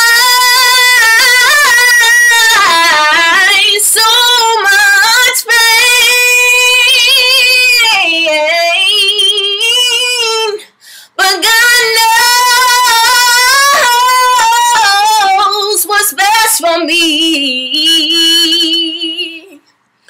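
A woman singing unaccompanied in a gospel style: long held notes with vibrato and wordless melismatic runs, breaking off briefly for breath about eleven seconds in and again near the end.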